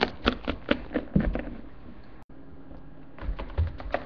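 Plastic Littlest Pet Shop figurines tapped along a hard floor as they are made to walk: quick runs of light clicks, a few a second, with a short pause near the middle before the tapping resumes.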